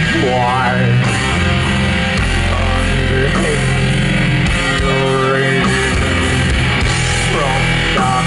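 Doom metal band playing live over a PA: heavy distorted guitars, bass and drums, with a wavering melodic line over them.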